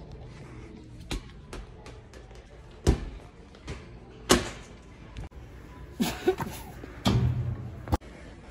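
A rubber playground ball being kicked and bouncing: about six sharp thuds with a short ring after each, the two loudest about 3 and 4 seconds in.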